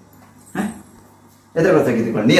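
Human voices making wordless vocal sounds: a short one about half a second in, then louder, continuous ones from about a second and a half in.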